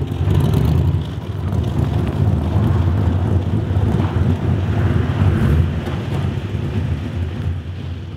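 1965 Chevrolet Corvette Stingray V8 with side exhaust pipes, running with a deep rumble as the car moves off. The sound fades away near the end.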